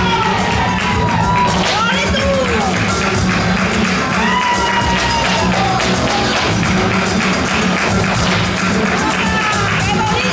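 Live flamenco music: a wavering sung vocal line over acoustic guitars and cajón, with hand clapping (palmas).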